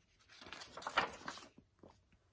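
Paper rustle of a picture book's page being turned, lasting about a second.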